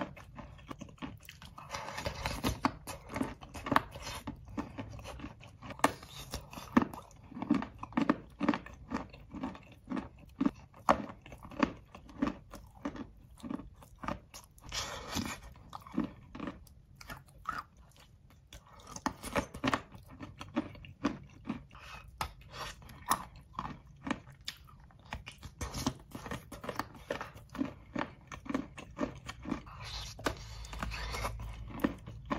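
Close-miked chewing and crunching of eating chalk: a steady run of crisp chews about two a second, with a brief lull just past halfway.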